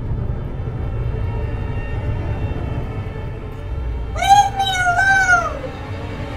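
Low, steady room murmur, then about four seconds in a loud, high, wavering meow-like cry that rises, dips and falls over about a second and a half.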